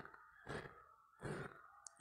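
Two soft breaths close to the microphone, about half a second and just over a second in.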